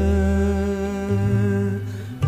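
A Sinhala song: the singer holds one long, steady sung note over a low instrumental accompaniment, and the note fades near the end.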